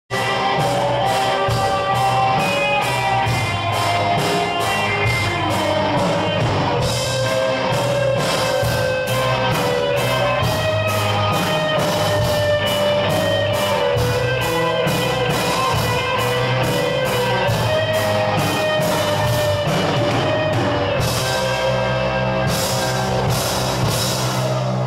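A rock band playing: electric guitars over a steady drum beat.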